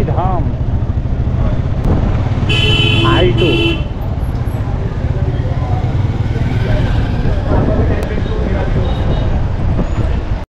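A two-wheeler's engine running at low speed through town traffic, with a steady rumble of engine and wind on the helmet microphone. A vehicle horn sounds twice in quick succession, two short blasts about two and a half seconds in.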